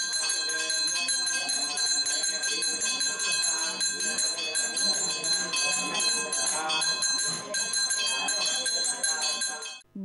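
Temple bells ringing continuously with rapid repeated strikes, over a murmur of people talking. The ringing cuts off suddenly near the end.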